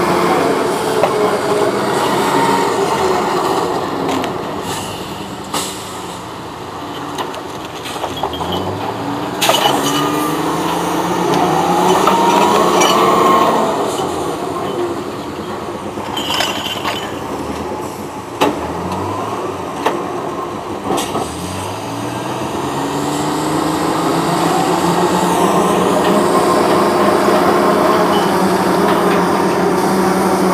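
Diesel engine of a logging cable yarder working under load, its revs rising and falling several times, with a few sharp knocks.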